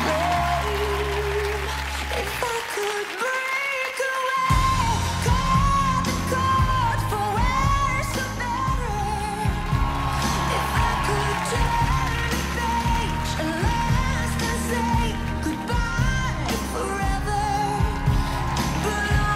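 Live pop ballad: a woman's lead vocal over piano and band. About four and a half seconds in, after a short drop-out of the low end, the full band with bass and drums comes in louder.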